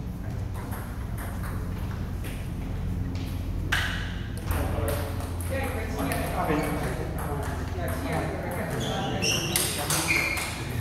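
Table tennis ball being hit back and forth in a rally: a run of sharp clicks of the celluloid ball off rubber-faced paddles and the table top, with players' voices.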